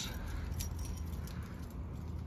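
Steady outdoor background noise with a few faint, light metallic clinks in the first half.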